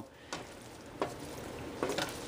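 Rehydrated spaghetti squash sizzling steadily in olive oil in a pot as it is stirred with a wooden spoon, with a few light scrapes of the spoon.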